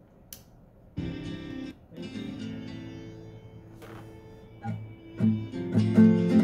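Nylon-string classical guitar strummed: after a quiet first second, a chord about a second in and another about two seconds in ring on, then quicker strums start near the end. It is the strum pattern of the song's intro being played through.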